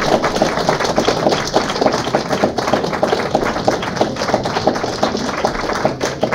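Audience applauding: many hands clapping in a dense, steady patter that eases slightly towards the end.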